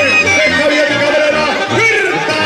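Banda brass band playing: a wind melody with trills over a repeating tuba bass line.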